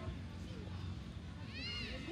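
Distant voices of footballers calling on the pitch over a steady low rumble, with one short high-pitched call that rises and falls near the end.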